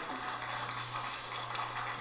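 A group of people applauding, a dense crackle of clapping, over a steady low electrical hum.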